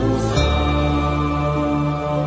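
Background music of a chanted mantra sung in long, held notes, shifting to a new pitch about half a second in.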